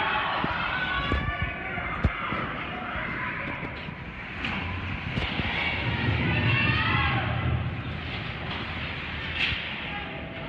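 Ice hockey play in an echoing rink: skate blades scraping the ice, with several sharp clacks of stick on puck or puck off the boards, and players' calls.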